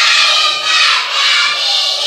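A group of children shouting together, loud and many-voiced, between lines of a chanted game song.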